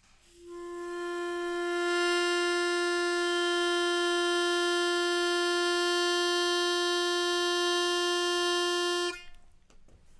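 Harmonica holding a single steady note with its fundamental at about 352 Hz, rich in overtones at whole-number multiples reaching up near the top of human hearing. The note swells in over the first couple of seconds, holds steady, and stops abruptly about nine seconds in.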